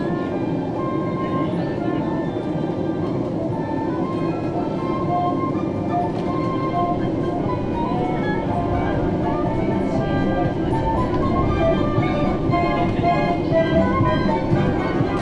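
Disney Resort Line monorail running, a steady low rumble, with background music of short melodic notes playing over it.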